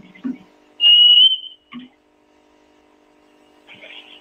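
A short, loud, high-pitched squeal on one nearly pure tone, lasting under a second and rising slightly at the end, about a second in, over a steady low hum.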